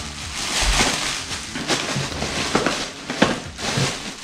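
Plastic air-cushion packing pillows crinkling and crackling as they are handled and lifted out of a cardboard box, in a dense run of sharp crackles.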